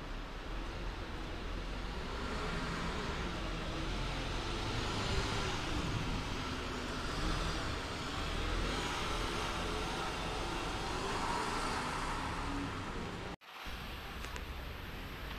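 Articulated Mercedes-Benz city buses driving off from a stop: engine running with tyre noise and a faint whine that rises and falls. The sound cuts out abruptly near the end.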